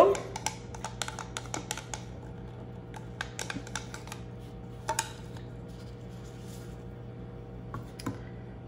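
Light clicking taps of a wooden stick against a small plastic cup as powdered mica is knocked out into soap batter, in quick runs through the first two seconds and again around three to four seconds. A steady low hum runs underneath.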